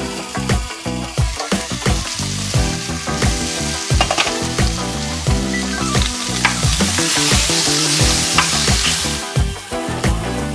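Sausages sizzling in a stainless steel skillet, the sizzle growing louder in the second half, with a few knocks of a wooden spoon as they are stirred.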